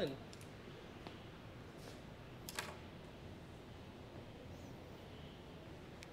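Faint, scattered clicks of someone typing a text message on a smartphone, a few separate taps over several seconds against a low room hiss.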